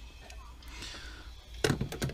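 Quiet handling noise as a digital caliper is moved about and set down, with a few sharp clicks and knocks near the end.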